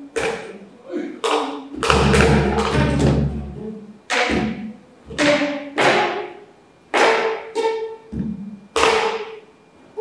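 Solo geomungo, its silk strings struck with the bamboo stick (suldae) in slow, spaced strokes, each note ringing and dying away, with the stick's click against the instrument's body heard at every attack. The loudest and deepest stroke comes about two seconds in, booming for over a second.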